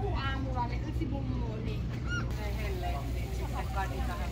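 Background chatter of several people talking, over a steady low rumble.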